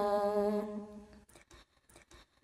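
A woman's voice holding one long, steady sung note in Red Dao folk singing. The note fades out about a second in, leaving a pause between phrases.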